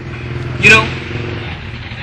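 A steady low hum, with a short loud shout from a person about two-thirds of a second in.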